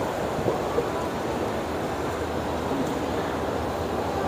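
Steady rushing background noise of a busy shopping mall, heard while riding an escalator, with a few faint clicks.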